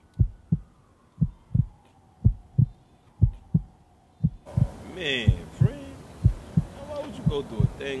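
Heartbeat sound effect: a paired low thump repeating about once a second, with a faint tone slowly falling in pitch over the first half. About halfway in, background noise rises under it.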